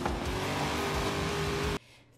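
Car engine and road noise from a car-chase animation's soundtrack: a steady drone over a dense rush of noise that cuts off suddenly near the end.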